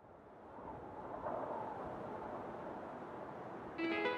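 Faint, steady outdoor background noise fading in after a moment of silence, with no distinct events. Keyboard background music starts near the end.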